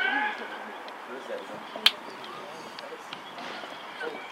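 Outdoor youth football match: faint voices of players and onlookers over a low background, with one sharp kick of the football just under two seconds in and a few softer touches.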